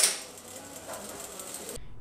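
A sharp click, then a Singer industrial sewing machine running steadily with faint ticking.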